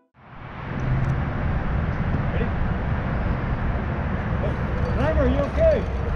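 Steady outdoor background noise, a low rumble with a hiss over it, fading in during the first second. A man's voice calls out about five seconds in.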